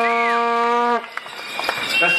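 A horn blown in a protest crowd: one steady note held for about a second, which cuts off abruptly, with short rising-and-falling whistles over its start.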